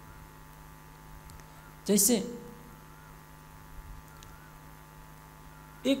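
Steady electrical mains hum from a microphone and sound system, heard through a pause in speech, with a single short spoken word about two seconds in.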